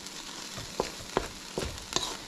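Octopus in coconut milk sauce sizzling in a steel wok while a wooden spatula stirs and scrapes it, with a few sharp knocks of the spatula against the wok in the second half.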